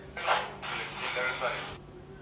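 A person's voice heard briefly for about a second and a half, over a faint steady low hum.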